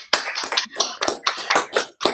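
Hands clapping in a quick, steady run of about six claps a second, heard over video-call audio.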